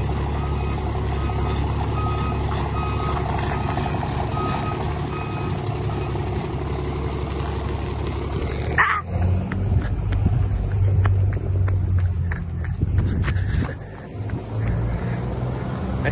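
Ford Cargo truck's diesel engine running as the truck pulls away. A short beep repeats over the first five seconds or so, and a brief sharp sound comes at about nine seconds, after which the engine note changes.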